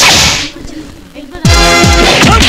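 A sharp, loud whoosh sound effect at the start, then about a second and a half in, loud fight-scene music comes in with repeated falling low tones.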